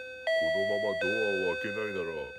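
Two-tone electronic doorbell chime rung again and again: a higher note about a quarter second in, dropping to a lower note about a second in, each held and fading. A voice talks over the chime.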